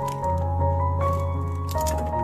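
Background music: sustained instrumental notes over a steady bass note.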